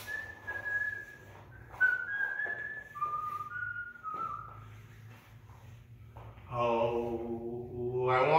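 A man whistling a tune in a string of clear held notes, with a thump about two seconds in. Near the end a man's singing voice starts.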